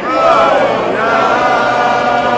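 Stadium fans singing and chanting along to a song played over the arena sound system, with a man's voice close to the microphone singing with them.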